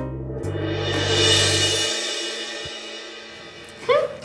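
Background music: held bass notes under a cymbal swell that peaks a little over a second in and then fades away, the bass stopping about two seconds in.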